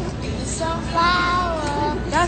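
Singing: a high voice holding long notes that bend slowly in pitch, starting about half a second in.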